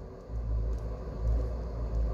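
A low, steady rumble that starts a moment in.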